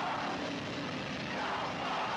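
Hardcore punk band playing live at full volume, captured as a heavily distorted, steady wall of noise in which no single instrument stands out.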